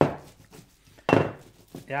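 A plastic paint bottle is dabbed down onto cling film over wet paint on a wooden worktable, giving two knocks about a second apart.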